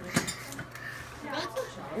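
A metal knife clinks sharply once against the table about a quarter-second in, amid the handling of knives while meat is being cut, with faint voices around it.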